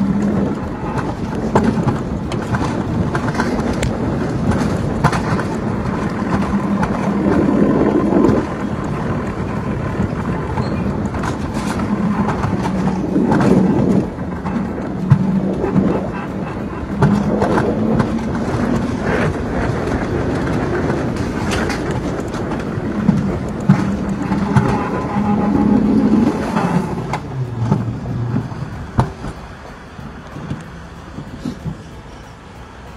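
Mountain coaster cart running along its metal rails: a steady rumble and hum of the wheels with scattered clacks, growing quieter in the last few seconds.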